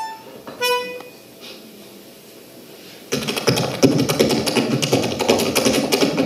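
Small diatonic button accordion sounding two short chords near the start, then a quiet stretch. About three seconds in, a much louder, dense clatter of rapid sharp strokes starts and keeps going.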